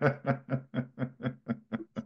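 A person laughing: an even run of short 'ha' pulses, about six a second.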